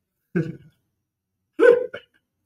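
Two short bursts of a man's laughter, a brief chuckle about a third of a second in and another near the end.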